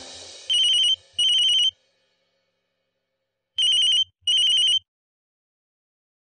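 Phone ringing in a trilling double-ring pattern: two short rings, a pause of about two seconds, then two more. Music fades out just before the first ring.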